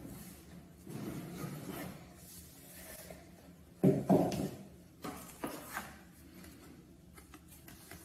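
Handling of a rigid cardboard shoe box: a soft rubbing as the fitted lid is drawn off, a louder knock about four seconds in and a smaller one a second or so later, then faint light paper handling near the end.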